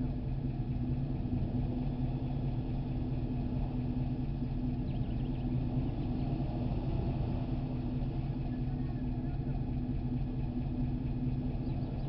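A vehicle engine running steadily: a low, even rumble with a constant hum that neither rises nor falls.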